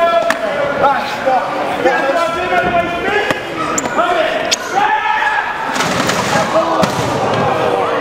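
Voices of a crowd and wrestlers shouting in a hall, cut by about six sharp impacts such as slaps or bodies hitting hard surfaces as the match brawls around ringside.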